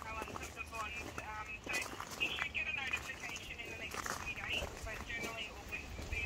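Small birds chirping and chattering in a run of short, high calls.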